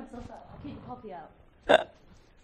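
Quiet laughter and murmuring voices, then one short, loud burst of laughter near the end.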